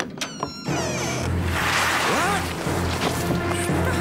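A wooden door bar knocks and clicks as it is lifted from its bracket. Then a loud, steady rushing rumble sets in as snow pours through the opened door, with a few falling whistle-like glides over background music.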